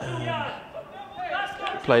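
Speech only: a man commentating on football, a hesitant 'um', a short pause, then the next word.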